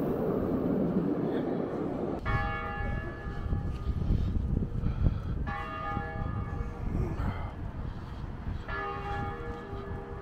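A low rumble of a tram on its rails for the first two seconds. Then a bell tolls three slow strikes about three seconds apart, each ringing on with several tones and fading, over a steady low rumble of wind and city noise.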